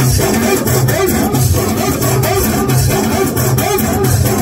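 Amplified Moroccan popular (chaabi, aita zaaria) music led by an electronic keyboard, with a steady, repeating beat and short melodic phrases over it.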